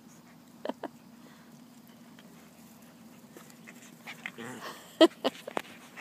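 Eight-week-old puppies whimpering softly close to the phone, with a few sharp knocks as they mouth at it. There are two light clicks about a second in, then a quiet stretch, then whimpers and knocks near the end, the loudest knock about five seconds in.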